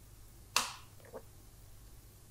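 A single short, sharp snap-like click about half a second in, fading quickly, then a much fainter short click about a second later, over a low steady hum.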